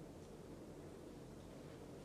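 Very faint, steady running sound of a 52-inch Hunter Oakhurst ceiling fan, a low hum with a soft rush of air, barely above room tone.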